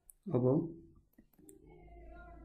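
A few light, sharp clicks in quick succession, a stylus tapping on a tablet screen while handwriting.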